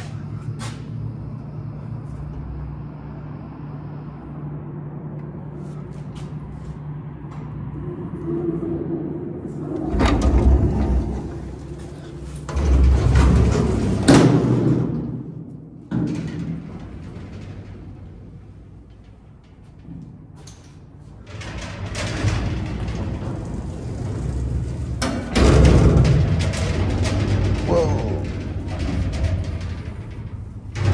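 Hydraulic freight elevator: a steady low hum of the elevator machinery as the car arrives. It gives way after about ten seconds to loud clattering and banging of the vertical bi-parting doors and the expanded-metal mesh gate being worked. A second run of rattling and banging from the gate comes near the end.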